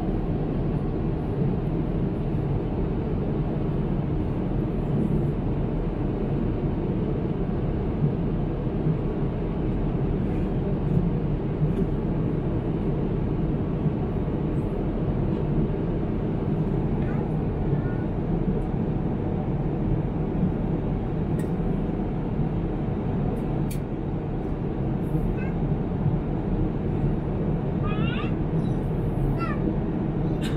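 Steady engine and airflow noise inside the cabin of an Airbus A350 with Rolls-Royce Trent XWB engines, in the climb after takeoff. Near the end, a few short high-pitched voice-like sounds rise and fall above it.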